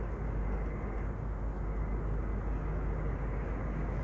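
Steady background rumble and hiss with a low hum and no distinct events: the recording's constant noise floor.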